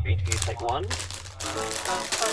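Opening of a Prime Video trailer played through a device speaker: a low steady bass tone under the Prime Video logo for about a second and a half, then a voice begins, over a crinkly noise.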